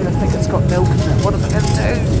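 Steady low drone of an airliner cabin in flight, under background music with a singing voice.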